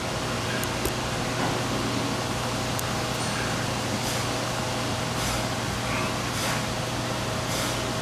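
Steady workshop machine hum with a low drone and a faint high whine. From about halfway through, faint soft hisses repeat about every second and a quarter.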